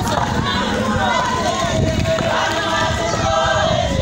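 A crowd of church members singing together, many voices overlapping, with a long note held through the second half.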